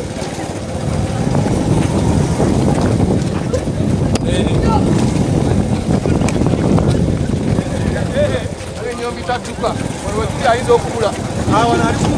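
Wind buffeting the microphone of a camera carried by a jogging runner, a continuous low rumble, with the voices of the running group shouting and talking over it, more clearly in the last few seconds.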